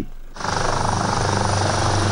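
Loud, steady machine or vehicle noise with a deep hum and a fast, even flutter, starting about a third of a second in.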